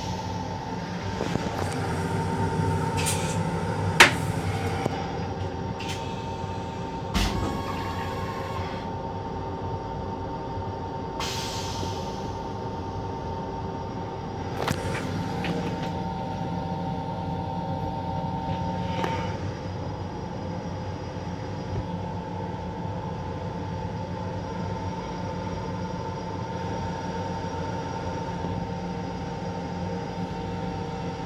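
Running noise inside the restroom of an M7 electric railcar: a steady rumble and hum with a couple of steady whining tones. A few sharp clicks and knocks sound over it, the loudest about four seconds in.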